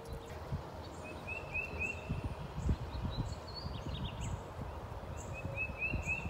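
Songbirds chirping in a wooded backyard: a quick run of short chirps about a second in and again near the end, with a few other brief high calls between them, over an uneven low rumble.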